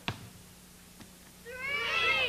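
A meow-like call whose pitch rises and then falls, starting about one and a half seconds in and still going at the end, after a sharp click at the very start.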